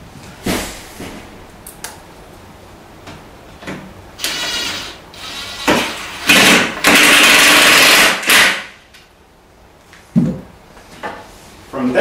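Cordless drill/driver driving a set screw into the toe kick's clip: a short burst about four seconds in, then a longer loud run of about two seconds. A knock comes about half a second in, and a thump a couple of seconds before the end.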